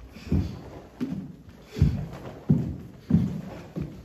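Bare feet stamping and landing on a hardwood floor as two karateka turn and kick, about six dull thuds spaced roughly evenly, under a second apart.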